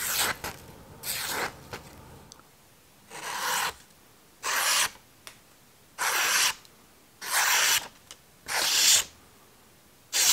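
A freshly sharpened and stropped D.H. Russell belt knife slicing through a sheet of paper in a sharpness test, seven short hissing cuts about a second and a half apart.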